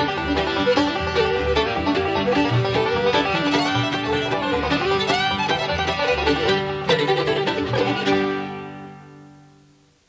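Bluegrass band of fiddle, banjo, guitars, mandolin and bass playing the last bars of an instrumental rag. A final chord is struck about seven seconds in and rings out, fading away.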